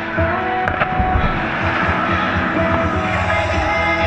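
Background music playing over the rush of splashing water as two leaping dolphins crash back into the pool, the splash loudest between about one and three seconds in.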